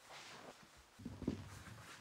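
Quiet room with faint rustling of clothing and soft body-movement noises, a few low bumps about a second in.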